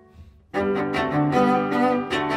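Cello and piano playing a classical chamber piece. A held chord fades to a brief hush, then both instruments come back in together about half a second in: the cello bows held notes over repeated piano strokes.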